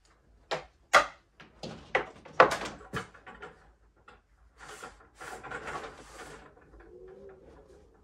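A series of sharp knocks and clatters as a table lamp is handled and set down on a cube shelf unit, the loudest about one and two and a half seconds in, followed by a couple of seconds of rustling.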